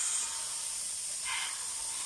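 Mixed vegetables sizzling in hot oil in a wok: a steady frying hiss, with a brief louder flare about one and a half seconds in.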